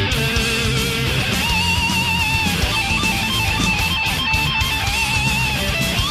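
Power metal song playing: long held lead guitar notes with a wavering vibrato over distorted guitars, bass and drums.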